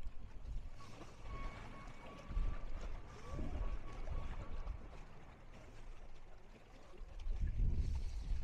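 Wind gusting across the microphone in uneven low rumbles, strongest near the end, with a faint thin steady whine from about one second in to about four seconds in.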